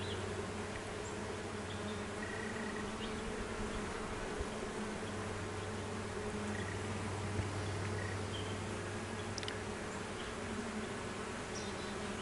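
Honey bees of an opened hive buzzing in a steady drone.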